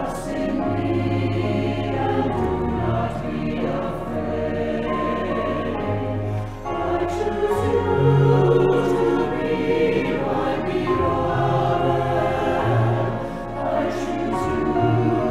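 Choir singing with accompaniment, over long held bass notes that change every second or two.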